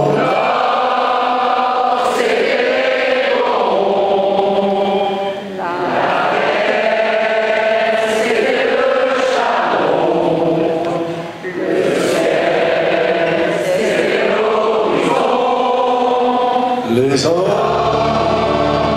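A concert audience singing a French chanson together in unison, without accompaniment: long held sung phrases, with two short breaks between them.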